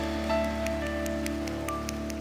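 Worship band's final chord held and slowly fading, sustained tones over a low drone with a few light high notes scattered on top.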